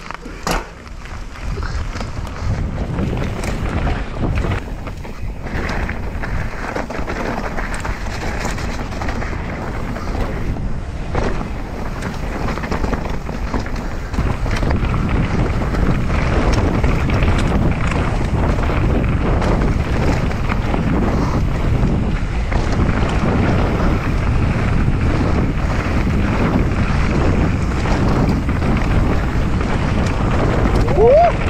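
Mountain bike descending a dirt trail at speed: wind buffeting the microphone over tyres rolling on dirt, with frequent knocks and rattles as the bike goes over bumps. The sound gets louder about halfway through.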